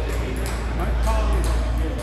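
Table tennis balls clicking, a few scattered sharp ticks of balls off tables and bats in a large hall, with indistinct voices and a steady low rumble underneath.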